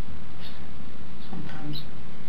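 Steady hum and hiss of an interrogation-room video recording, with two faint, brief squeaky sounds, one about half a second in and one near the end.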